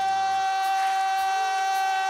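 Male R&B lead singer holding one long, steady high note. Lower accompaniment under it drops away about half a second in.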